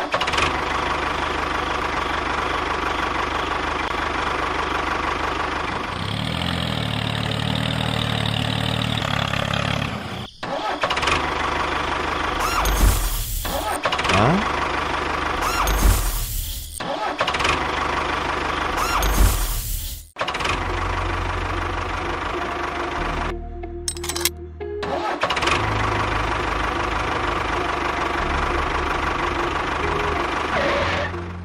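Tractor engine running under background music, with three short loud surges of noise about 13, 16 and 19 seconds in.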